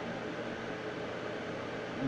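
Steady background hiss with a faint low hum, unchanging throughout: the room's background noise in a pause between words.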